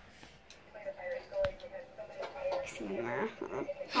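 Faint speech playing from a television across a small room, with one sharp click about a second and a half in.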